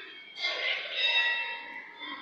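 A child's high-pitched voice calling out, held for about a second before fading.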